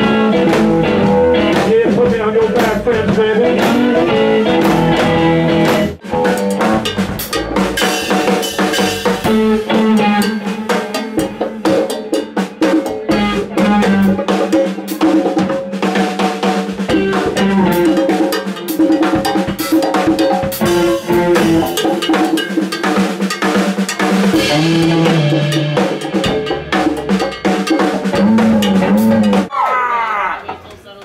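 Live blues-rock band playing with two drummers, drum kits and percussion hitting densely over sustained bass and guitar notes. The playing breaks off briefly about six seconds in and stops at the very end.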